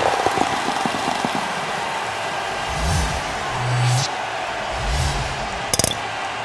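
Short sponsor jingle: a steady noisy wash with a few low bass notes in the middle and a brief crackle near the end.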